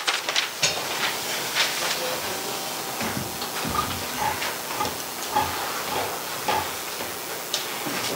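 Indistinct murmur of people talking quietly and moving about in a room, with scattered small knocks and rustles over a steady hiss.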